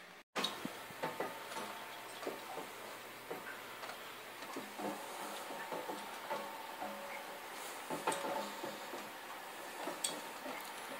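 Irregular light ticks and clicks in a quiet room, over a faint steady hum. The sound drops out for a moment just after the start.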